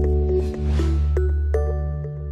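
Short logo jingle: a deep bass note held throughout, a swooshing sweep a little before one second in, then two bright chime-like hits that ring on, the second about a second and a half in.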